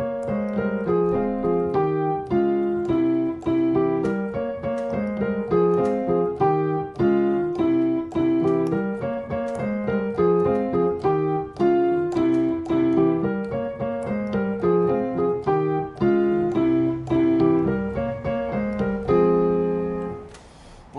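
Solo piano playing a salsa montuno over the Andalusian cadence in F minor (F minor, E-flat, D-flat, C7): a steady, syncopated repeating pattern of chords and octaves. Over the C7 chord it adds a run in tenths.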